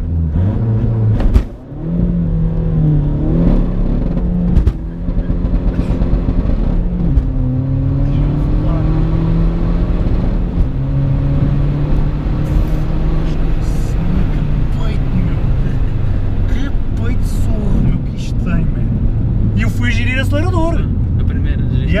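Tuned Seat Ibiza TDI turbodiesel, running on about 3 bar of boost and heard from inside the cabin, launched from a standstill and accelerating hard through the gears. The engine note rises and drops back at each gear change, about a second and a half, five, seven and ten seconds in.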